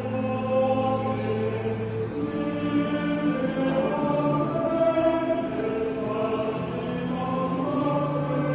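Choir singing a sacred hymn in long, slowly changing held notes.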